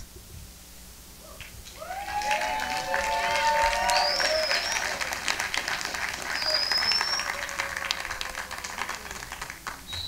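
Audience applauding, with a few voices cheering over it. The applause builds about two seconds in and dies down near the end.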